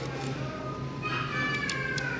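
Faint background music with a drawn-out note sliding slowly downward, and a hanger clicking on the clothes rack near the end.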